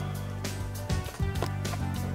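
Background music with steady sustained tones.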